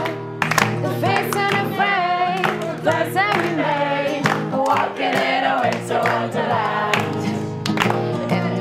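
A woman's voice and a group of voices singing a Christmas song together over a strummed acoustic guitar, with hands clapping along to the beat.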